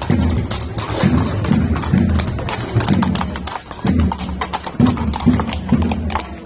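Procession music with a drum beating steadily about twice a second and sharp clicks over it.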